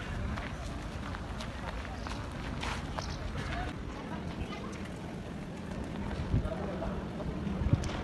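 Outdoor street ambience: wind rumbling on the microphone, with indistinct voices of people nearby and a couple of brief thumps in the second half.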